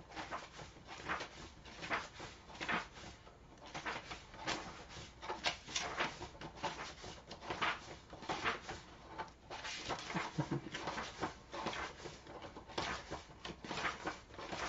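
Paper pages of a paperback book being flipped one at a time by hand, a steady run of short swishes about one or two a second.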